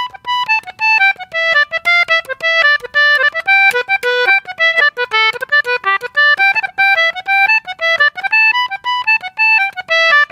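English concertina playing a folk jig melody as a quick run of short, separate reedy notes, with occasional chords.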